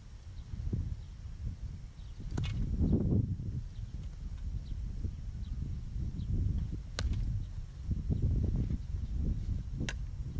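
Three sharp knocks of a lacrosse ball being shot and struck, about two and a half seconds in, at seven seconds and near the end, over a steady low rumble of wind on the microphone.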